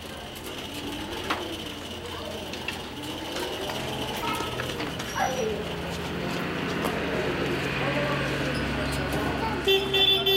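Electric drive motor of a homemade solar-powered mobility-scooter-type vehicle, running with a low steady hum as it moves slowly forward, with faint voices in the background. A brief pitched tone, like a beep, sounds at the very end.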